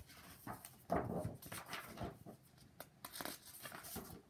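A picture book being opened and handled close to the microphone: paper and cover rustling with a string of short irregular knocks and brushes, loudest about a second in.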